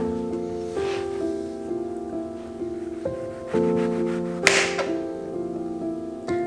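Soft background music of sustained chords. A kitchen knife slices through a lemon onto a plastic cutting board, with one short, sharp cutting sound about four and a half seconds in.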